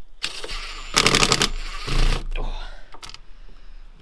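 Cordless drill with a small Phillips bit driving in a screw. It runs for about two seconds, with a rapid rattle of clicks about a second in.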